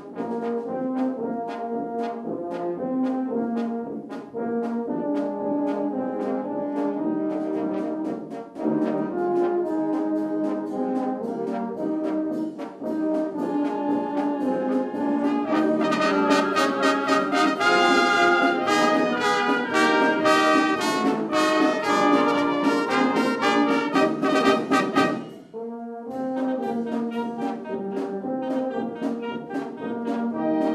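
Uniformed wind band of clarinets, flute and brass playing a piece with a steady beat. It swells louder and fuller about halfway through, breaks off briefly near the end, then carries on more softly.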